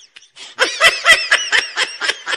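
Baby laughing in a run of quick, evenly spaced laugh bursts, about four a second, starting about half a second in after a short pause.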